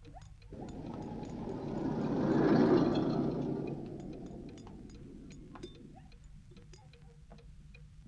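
Soft, irregular ticking runs throughout, under a swell of rushing noise that builds from about half a second in, is loudest near the middle and fades away by about five seconds in.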